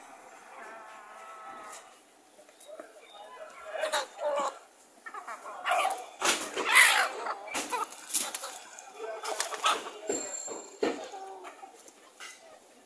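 Caged chickens, roosters and hens, calling and clucking, with the loudest call about six seconds in and lasting about a second. Scattered short knocks and clatter sound between the calls.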